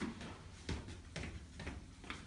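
Faint footsteps on a tiled floor, about two steps a second.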